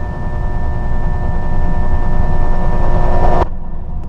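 A swelling film sound-design drone: a low rumble under several steady high tones, growing louder, then cut off abruptly about three and a half seconds in. A low rumble lingers after the cut and fades.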